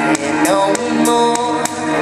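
Pop backing track with a steady drum beat, played over a PA, with a woman singing live into a microphone over it.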